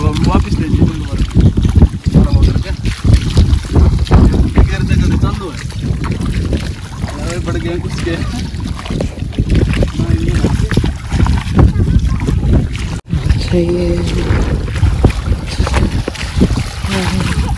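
Heavy wind buffeting the microphone in a loud, uneven rumble, with voices talking indistinctly underneath.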